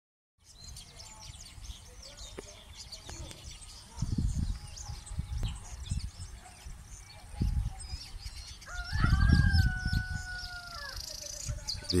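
A rooster crowing once, a long held call about nine seconds in, over many small birds chirping throughout. Bursts of low wind rumble on the microphone come and go.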